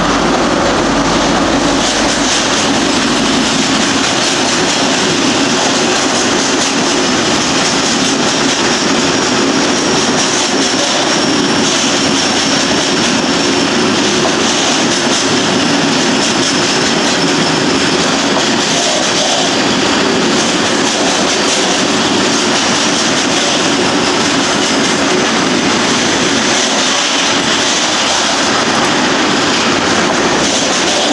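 Freight train rolling through a station without stopping: locomotives at the head, then a long string of covered hopper wagons, with a steady rush of steel wheels on rails. A faint high whine runs through the middle.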